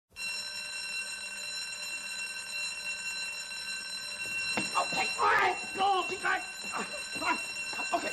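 Wall-mounted electric fire alarm bell ringing continuously, a steady metallic ring at an even level. Voices start talking over it about halfway through.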